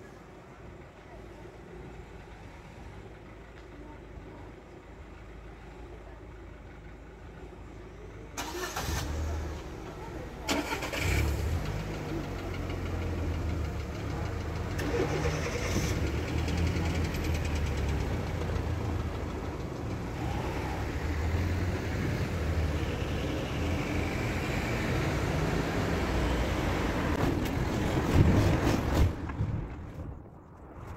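Road traffic at a railway level crossing: cars pulling away and driving over the tracks as the barriers lift. The engine and tyre noise comes in suddenly about eight seconds in, after a quieter stretch, and stays loud until near the end.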